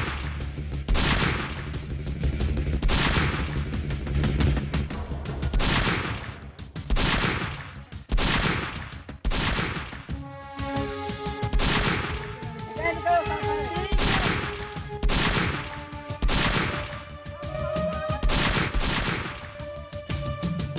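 Gunfight of single gunshots from long guns, roughly one a second, with background music coming in about halfway through.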